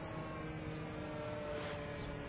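Radio-controlled flying boat's five-turn electric motor and propeller whining steadily in flight, with a few flat tones holding the same pitch throughout.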